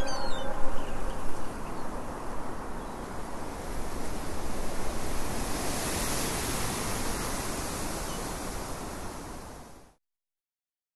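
Steady rushing noise, like surf, with a few brief high squeaks in the first second, fading out just before the end.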